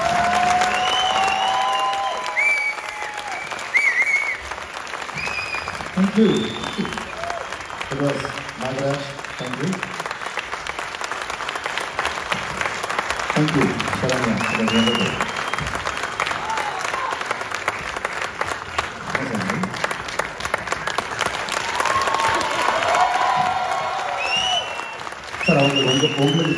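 Concert audience applauding steadily at the end of a song, with high whistles and cheers rising over the clapping.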